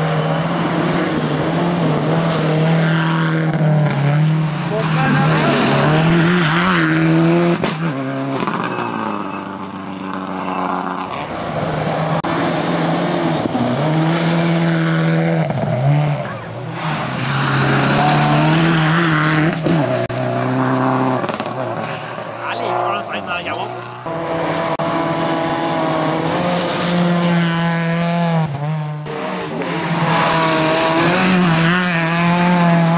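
Rally cars on a gravel stage, three in turn, their engines revving hard and falling back repeatedly through gear changes and corners.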